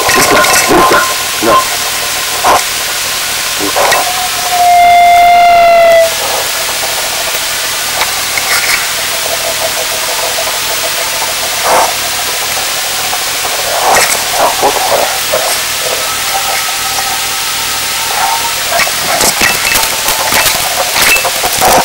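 Steady hiss and crackle from a wireless collar camera's radio audio link, with scattered short clicks and scrapes. About five seconds in, a loud single-pitched tone that falls slightly holds for about a second and a half.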